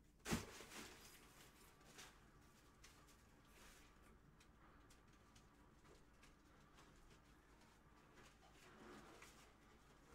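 Near silence with faint handling noises, opening with one short sharp click.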